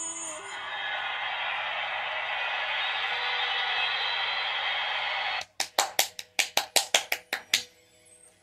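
A sung note cuts off about half a second in, followed by steady noise like a studio audience cheering for about five seconds. Near the end comes a quick run of about eleven sharp claps.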